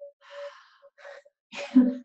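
A woman sighing into a microphone: two soft breathy exhalations, then a louder, voiced sigh in the last half-second. It is an exasperated sigh, followed by 'oh dear, so sorry about this'.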